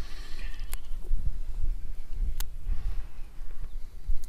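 Sheep bleating, once near the start and again more faintly about three seconds in, over a low wind rumble on the microphone. Two sharp clicks are also heard.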